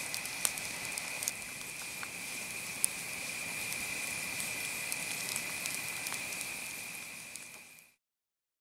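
Wood campfire crackling, with scattered sharp pops, over a steady high-pitched drone; the sound fades out near the end.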